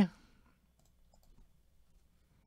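A man's spoken word trails off at the start, then near silence broken by a few faint ticks from a trading card being handled in gloved fingers.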